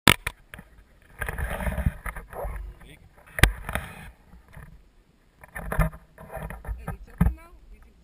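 Close, uneven rustling of jackets and harness straps against the camera, broken by a few sharp knocks from handling: one at the very start, one about three and a half seconds in, one near the end. Short bits of voice come in between.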